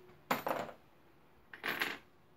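Clear plastic suction cups clattering against one another as they are picked from a pile and handled for inspection, in two short bursts about a second apart.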